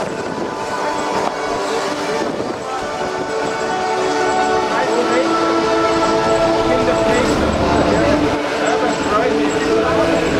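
Music of long, sustained chords that move to new notes every second or two.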